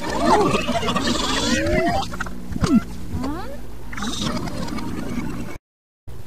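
Effect-altered cartoon ident soundtrack: sliding, swooping squeaks and animal-like calls over a steady low hum. It cuts out to silence just before the end.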